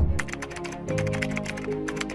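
A rapid keyboard-typing sound effect, about ten clicks a second, over background music with sustained notes.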